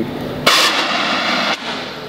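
Handheld stage gas jet fired in one hissing blast about a second long, starting and stopping abruptly.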